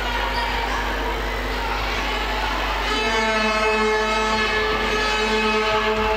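A noisy indoor sports hall with a steady low hum. About halfway through, a horn-like note with several overtones starts and is held at one pitch for about three seconds.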